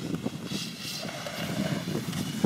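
Ice skate blades gliding and scraping over rough, scratched natural lake ice: a steady rumbling hiss, with a brighter scrape about halfway through.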